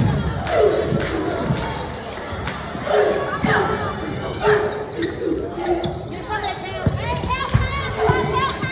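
A basketball bouncing on a hardwood gym floor, as low thuds that come at irregular intervals, under cheerleaders' chanted cheers and crowd voices in a reverberant gymnasium.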